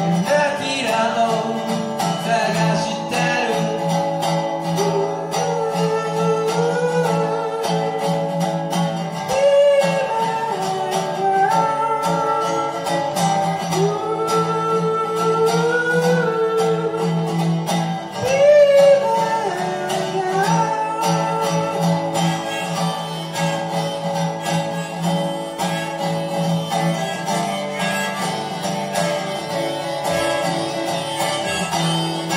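A song played live by one performer: a resonator guitar strummed steadily, with a lead melody that slides and bends riding on top of it.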